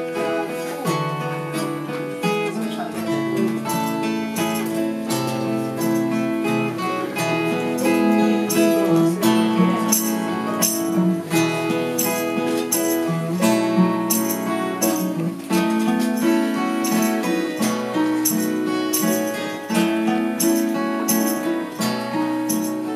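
Instrumental introduction of a waltz played on acoustic guitars and a mandolin, strummed steadily in three-time.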